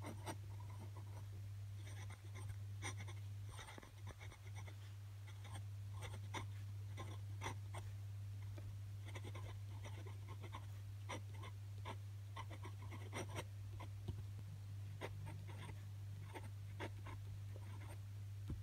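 Glass dip pen's glass nib scratching across paper as words are handwritten, in short strokes that come in quick clusters, over a steady low hum.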